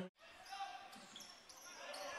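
Faint basketball-arena sound: a low crowd murmur with a few short, high squeaks of shoes on the hardwood court. It starts with a brief dropout.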